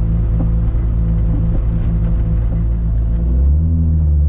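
A heavily modified turbocharged Toyota Supra's engine idling steadily, heard from inside the car. About three seconds in, the note drops lower and gets a little louder.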